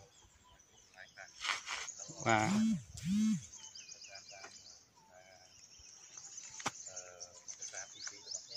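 Small birds chirping high and thin throughout in dry woodland, with two short, loud voiced calls a little over two seconds in, each rising and falling in pitch.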